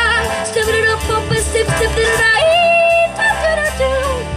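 A girl scat-singing into a microphone over backing music: a run of quick, short syllables, then a held note about two and a half seconds in, then more short notes.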